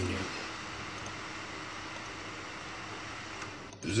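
Graphics card cooling fan spinning, a steady whirring hiss played back from a video through the computer's audio; it spins a little less noisily. The sound cuts off abruptly just before the end.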